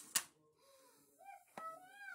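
A young child's wordless whining vocalization, high-pitched and gliding up and down in pitch, after two sharp knocks right at the start.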